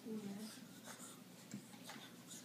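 A dog rubbing its back on a carpet rug as it rolls and wriggles, its fur and body making a soft scuffing, scratchy sound. A short voice-like sound comes at the very start.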